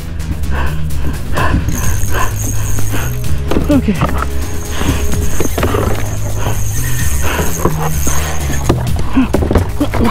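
Background music with a steady, stepping bass line and a high sustained tone through most of it.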